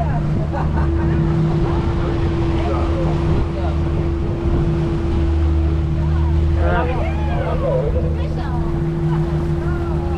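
Boat engine running steadily with a constant hum, under wind and water noise. Indistinct voices come in about seven seconds in.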